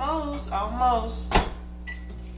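Talking for the first second or so, then a sharp click and a short high electronic beep near the end, as a microwave oven is shut and set running.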